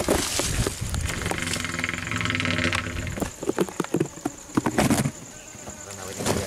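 An insect buzzing steadily close by for about two seconds in the first half, with scattered rustling and knocks around it.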